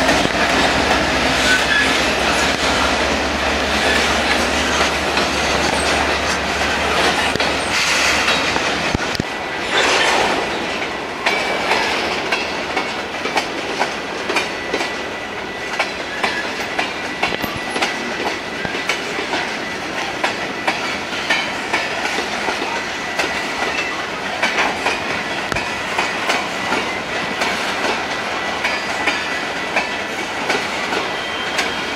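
Mid-train distributed-power locomotive, a GE C45ACCTE, running as it passes for the first several seconds, then fading. Loaded freight cars follow, rolling by with a steady run of wheel clicks over the rail joints and a thin, high wheel squeal through the middle stretch.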